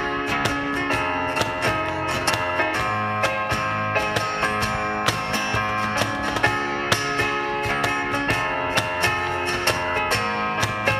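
A small acoustic band playing: two acoustic guitars strummed in a steady rhythm, with sharp cajon hits marking the beat.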